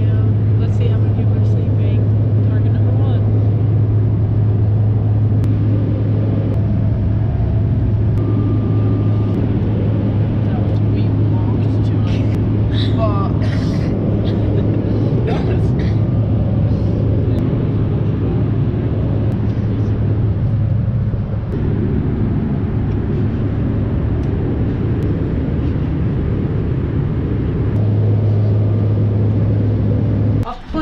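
Loud, steady drone of a jet airliner cabin in flight: a deep engine hum under a constant rush of air noise.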